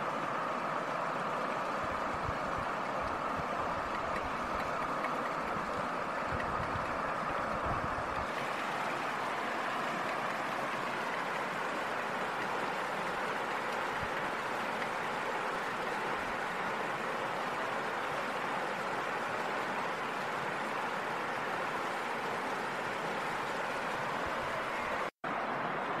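Steady, even rushing of flowing river water, unchanging throughout, with a momentary dropout near the end.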